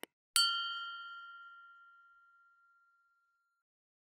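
A short click, then a single bright bell ding that rings and fades away over about a second and a half: the notification-bell sound effect of a subscribe-button animation.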